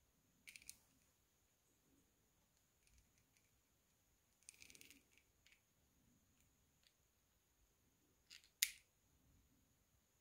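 Near silence broken by small clicks and taps as a precision screwdriver and the plastic throttle housing are handled: a couple of faint clicks near the start, a short run of them about halfway, and one sharper click near the end.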